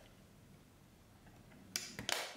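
Faint handling of a plastic handheld inkjet printer, then near the end a short sharp click as its ink-cartridge compartment lid is pressed shut.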